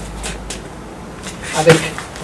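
Mostly quiet background with a faint low rumble and a soft tap or two, then a man's voice saying one word near the end.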